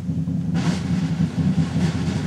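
Concert wind band holding a low, sustained chord: deep brass notes with little melody above them, a faint high shimmer coming in about half a second in.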